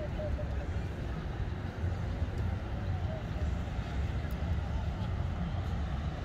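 Outdoor ambience: a steady low rumble, with faint distant voices.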